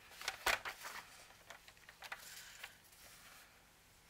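A plastic paper trimmer and a sheet of printed paper being handled on a cutting mat: a few light plastic clacks, the loudest about half a second in, then soft paper sliding and rustling as the sheet is lined up under the trimmer's arm.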